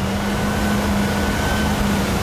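Land Rover Defender 110 ploughing through water: a steady rush of splashing water with a low, even engine hum underneath.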